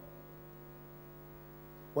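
Steady electrical mains hum from the microphone and sound system: a constant low buzz with evenly spaced overtones and nothing else over it.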